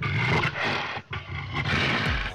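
A lion's roar sound effect: a rough, growling roar in two parts with a brief break about a second in.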